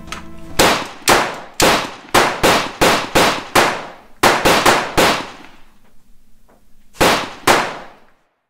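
A rapid, irregular series of sharp clanging impacts, each ringing briefly. There are about a dozen in the first five seconds, then a pause, and then two more near the end.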